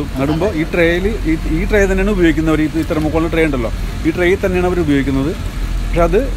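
A man talking continuously, with a steady low hum underneath.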